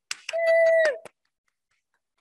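A single voice cheering, one short high held call that drops in pitch at its end, over a few quick hand claps, lasting about a second and then stopping.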